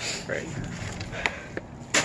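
Handling and rummaging noises from gloved hands going through discarded items, with two sharp clicks, one about a second in and one near the end.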